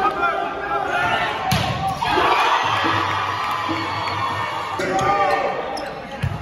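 Volleyball rally in a sports hall: sharp slaps of the ball being hit, about one and a half seconds in and again near five seconds, amid players' shouts and spectators' voices.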